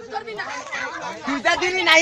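Several people talking over one another, the voices growing louder near the end.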